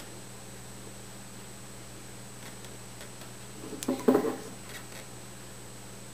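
Steady faint hum, then about four seconds in a brief cluster of scrapes and clicks as the metal prongs of a twist-up cork puller are worked down between a synthetic cork and the glass of the bottle neck.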